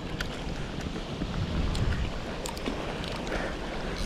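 Wind rumbling on the microphone over small waves lapping at a lake shore, with a few faint clicks.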